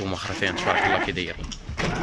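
Indistinct voices talking, with a few short knocks.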